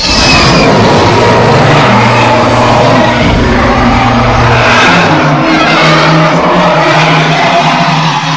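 Recreated SpaceGodzilla roar: one long, loud, harsh monster roar whose low pitch steps up about five seconds in.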